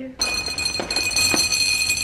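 Dry cat kibble poured from a bag into a ceramic bowl: a rattling patter of pellets that sets the bowl ringing. It starts suddenly just after the beginning and keeps on steadily.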